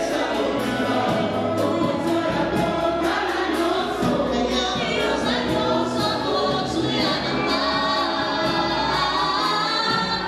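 Gospel worship song: a woman sings lead into a handheld microphone with other singers joining in, over accompaniment with a steady beat.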